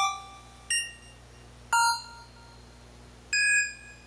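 Three bell-like chime tones, one at a time about a second apart and each a different pitch, each starting sharply and ringing away; the third is held longest.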